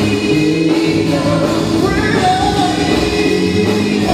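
Gospel song: voices singing into microphones over steady instrumental music.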